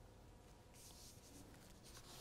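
Near silence with the faint scratch of a pen writing on paper, one short stroke about three-quarters of a second in.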